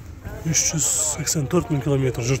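A man talking, with a short hiss about half a second in, overlapping his voice.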